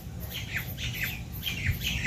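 A bird calling: a quick series of short, falling chirps, about four a second.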